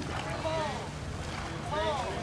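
Distant voices calling out over the water in short raised calls, over a steady rumble of wind on the microphone.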